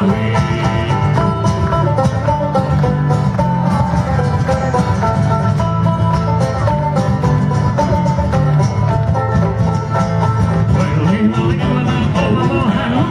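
Live instrumental passage of a folk sea-shanty band: banjo and acoustic guitar playing a tune together over a bodhrán's steady beat.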